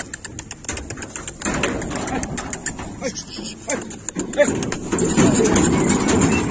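Cattle moving through steel pipe pens: scattered hoof clatter and knocks against the metal rails, heaviest about a second and a half in and again near the end.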